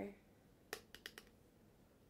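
Four quick, sharp clicks within about half a second, made by small hard makeup tools or the eyeshadow palette being handled.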